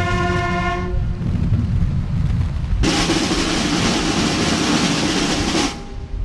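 Military brass band playing a national anthem. A held brass chord ends about a second in, followed by drums. From about three seconds in there is a loud roll of drums and cymbals over low brass, which breaks off shortly before the end.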